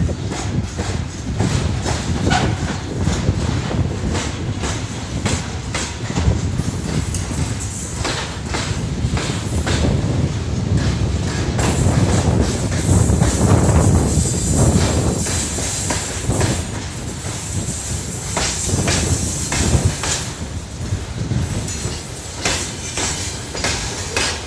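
A freight train of covered hopper wagons and tank cars rolls past close by. The wheels clack over the rail joints over a continuous rumble, which grows loudest about halfway through.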